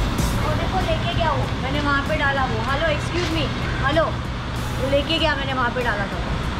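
Indistinct voices talking over a steady low engine rumble.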